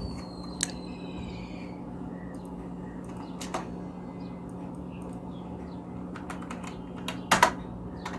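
Keystrokes on a computer keyboard: a few isolated clicks, then a quick cluster of clicks near the end, over a steady low hum.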